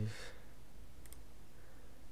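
A single faint computer mouse click about a second in, over low room noise.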